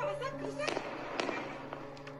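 Airstrike explosions: sharp blasts about two-thirds of a second and just over a second in, with crackling between them.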